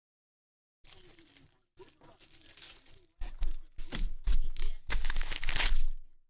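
A foil trading-card pack wrapper being torn open and crinkled by hand. It rustles faintly at first, then turns into loud tearing and crinkling about three seconds in.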